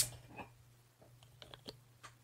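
A short hiss at the very start, then a few faint, scattered clicks and light taps from glasses and a beer bottle being handled on a table, over a low steady hum.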